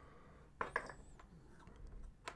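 Faint clicks and light taps of small plastic model parts being handled and pulled apart by hand, with a cluster of clicks about half a second in and a brief thin squeak just after.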